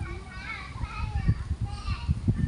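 A young child's voice calling out in high, wavering vocal sounds, over low thumps on the microphone.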